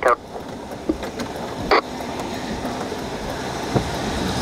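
Steady rushing noise inside a stopped car's cabin during a severe thunderstorm, slowly growing louder, with one short sharp sound about two seconds in.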